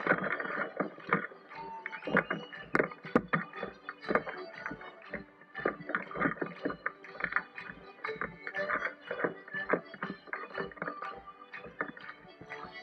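Live street band music for a festival dance: drum strikes in quick succession under held melodic notes.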